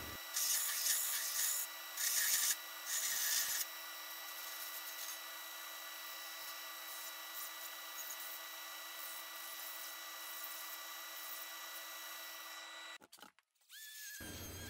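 Brodbeck 2x72 belt grinder with a flat platen grinding the bottom of a stainless steel cone flat: three short grinding passes in the first few seconds, then the belt running steadily with a faint hiss and whine.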